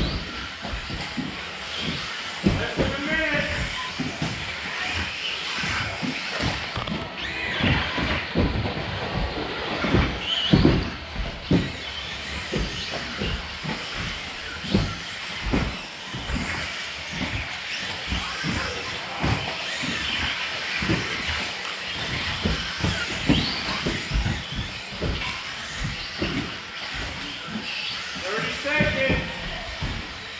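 1/10-scale electric 2WD RC buggies racing on an indoor carpet track: a steady noisy whir with frequent short knocks from landings and hits, over voices in a large hall.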